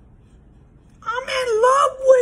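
A man's voice letting out a long, high, wavering wail without words, starting about a second in.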